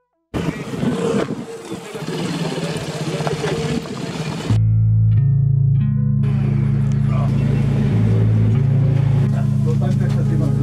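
A motorcycle riding over a rough gravel and rock track, heard as dense engine, tyre and wind noise for about four seconds. Then background music with a deep, steady bass line takes over, with voices beneath it.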